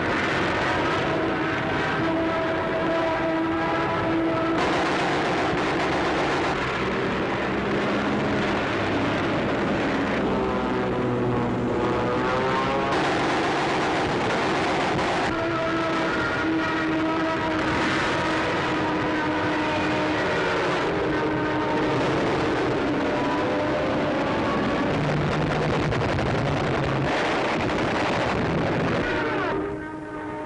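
Propeller aircraft engines droning continuously, their pitch shifting now and then, with a stretch of rising and falling pitch glides about ten seconds in.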